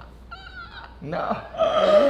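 A woman's short, high-pitched squeal of laughter, followed by a man saying "No."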